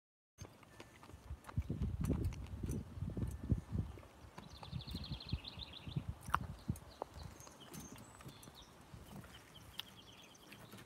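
Irregular low thuds of footsteps on a wooden deck, mixed with knocks from handling the phone, loudest in the first few seconds. About halfway through, a short high rapid trill.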